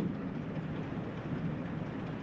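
Steady, even background hiss with no distinct event, in a pause of the speech.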